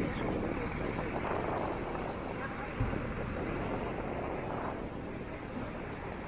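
City street ambience: a steady hum of traffic with indistinct voices of passers-by, and one short thump a little under halfway through.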